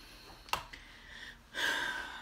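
A short sharp click, then near the end a quick, hissy intake of breath taken before speaking again.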